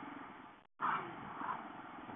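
Motorcycle engine running steadily at low road speed, heard through a bike-mounted camera's microphone. The sound cuts out completely for a moment just before a second in, then two short, louder sounds come about a second in and again half a second later.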